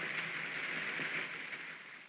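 Steady hiss of falling rain, fading away over the last second.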